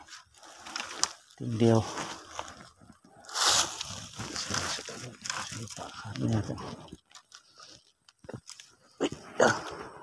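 Dry bamboo twigs and brush rustling in a short burst about three and a half seconds in, then a few small snaps and crackles near the end, as someone pushes through dense streamside thicket.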